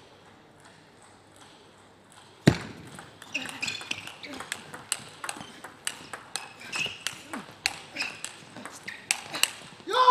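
Table tennis ball being served and then rallied: after a quiet start, one sharp click at about two and a half seconds, then a long series of quick, sharp clicks as the ball strikes the bats and the table, several a second. A voice shouts loudly right at the end.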